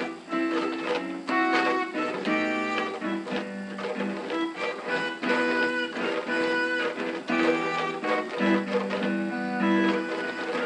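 Piano being played: a slow tune of struck chords and single notes, each ringing on and fading, thin in the bass.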